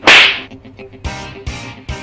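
A single loud, sharp slap right at the start, fading within about half a second, over background music with a steady beat.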